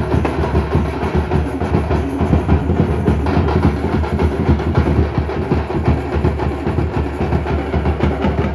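Tamate frame drums beaten together in a fast, loud, unbroken rhythm by a street drum troupe, with a deeper drum sounding underneath.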